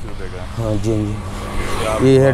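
A road vehicle passing by: a rush of engine and tyre noise that swells over the second half, with a man's voice talking briefly in the first second.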